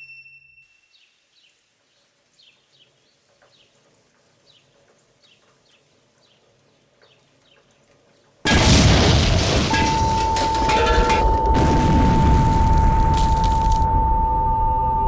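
Faint bird chirps over near silence, then, about eight and a half seconds in, a sudden loud boom from the film soundtrack that carries on as a dense rumble, with a steady high tone joining a second later.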